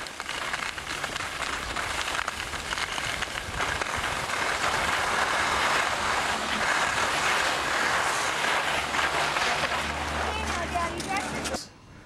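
Skis sliding and scraping over packed snow, a steady hiss with gritty crackle, mixed with wind buffeting the microphone of a moving skier. The sound stops abruptly near the end.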